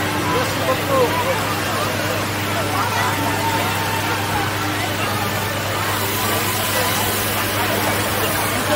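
Crowd chatter, many voices talking at once, over a steady low mechanical hum, with a higher hiss joining about three-quarters of the way through.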